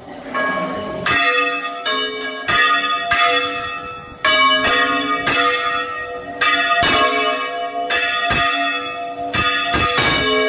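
Four church bells swung full-circle in a Valencian general peal (volteig), their clappers striking again and again in an irregular, overlapping pattern with long ringing tones. The ringing starts faint and turns loud about a second in.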